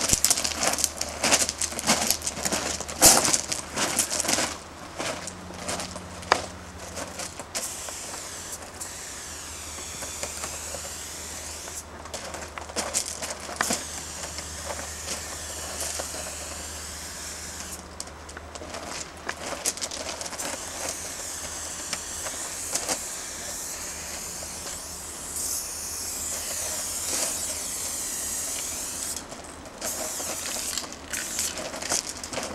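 Aerosol spray paint can with a fat cap: a few seconds of clicking rattle as the can is handled and shaken, then long hissing sprays of chrome-silver paint that waver in tone as the can sweeps through the letters.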